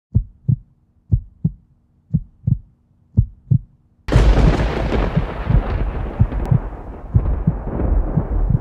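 Heartbeat sound effect: pairs of low thumps, about one pair a second. About four seconds in, a sudden loud blast of noise sets in and carries on, with low thumps still beating under it.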